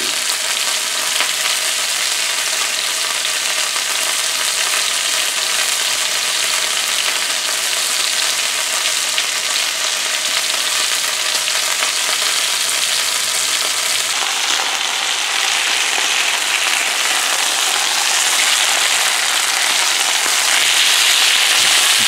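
Strip steaks searing in a very hot cast iron skillet (about 500 degrees), a steady loud sizzle of fat and juices frying. It grows a little louder near the end.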